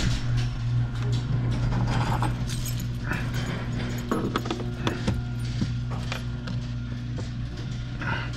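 Car engine idling steadily, heard from inside the cabin, with scattered clicks and knocks over it.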